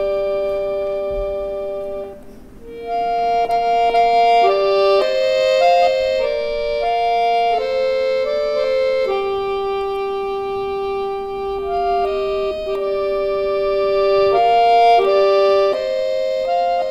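Solo bayan, a Russian chromatic button accordion, playing a slow folk-song arrangement in long held chords and sustained melody notes. The sound briefly dies away about two seconds in, then the melody resumes, moving from note to note over held chords.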